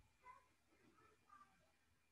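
Near silence: room tone over a video call, with a few faint, indistinct sounds in the first second and a half.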